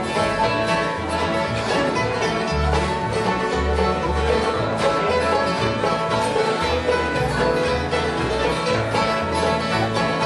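Bluegrass band playing an instrumental passage: banjo and strummed acoustic guitars over plucked upright bass notes.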